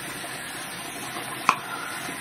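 Bathroom tap running hot water with a steady hiss, and one sharp click about one and a half seconds in.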